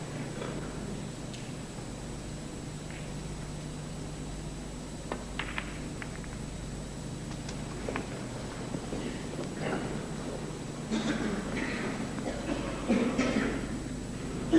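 Snooker balls clicking: a few sharp knocks of cue tip on cue ball and ball on ball, about five to six seconds in and again near eight seconds, over a steady low hum.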